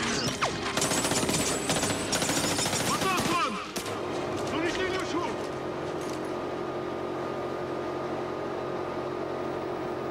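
Rapid bursts of automatic gunfire from a war-film battle scene, dense for about the first three and a half seconds. Then the gunfire stops, leaving a quieter steady hum with faint voices.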